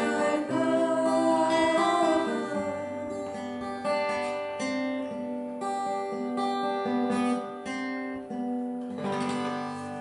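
A woman singing over a fingerpicked acoustic guitar for the first couple of seconds, then the guitar alone picking a run of single notes to close the song, ending on a last chord about a second before the end.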